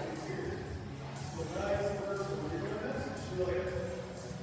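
Indistinct voices talking in a large gym hall.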